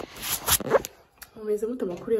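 Rasping, scraping handling noise of a phone rubbed against skin and clothing while it is repositioned. Then a woman's voice begins about a second and a half in.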